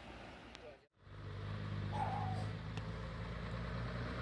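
After a brief drop-out about a second in, a fire engine's diesel engine runs with a steady low hum as the truck approaches.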